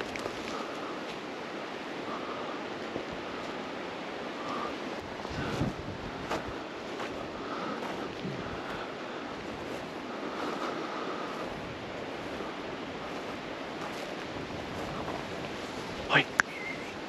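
Steady rushing outdoor background noise, with faint rustles and light clicks of people walking through dry tussock grass.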